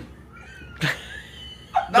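High, squeaky gliding vocal sounds from men laughing, with a short sharp burst of laughter just before a second in.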